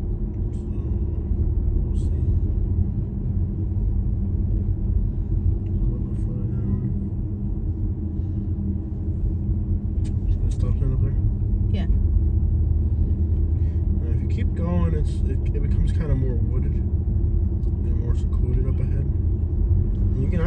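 Steady low rumble of a car driving at road speed, heard from inside the cabin, with a few brief clicks.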